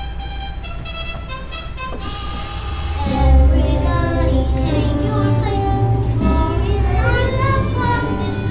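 A group of children singing a musical number with instrumental accompaniment. The accompaniment grows louder with a strong bass about three seconds in.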